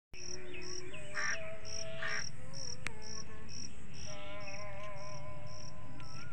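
A cricket chirping in an even rhythm, about two short chirps a second, over a low steady background hum and faint wavering tones.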